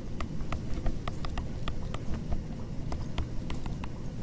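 A stylus tapping and clicking on a tablet screen while handwriting, a quick irregular run of sharp ticks, about three or four a second.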